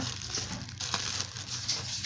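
Clear plastic bag of face masks crinkling and rustling as hands grip and pull at it, irregular crackly handling noise.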